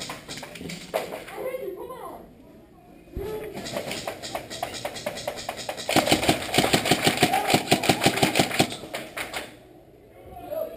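Airsoft electric rifle (KWA SR-7) firing full-auto: a rapid, even string of shots, lightest from about three seconds in and loudest in a long burst from about six seconds in that lasts nearly three seconds.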